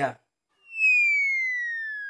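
A comic whistle sound effect: one clean whistling tone that starts about half a second in and glides slowly down in pitch, fading as it falls.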